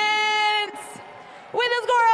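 A match announcer's voice holding the end of an excited call for a moment before cutting off, a short hiss, a brief lull, then speech starting again about one and a half seconds in.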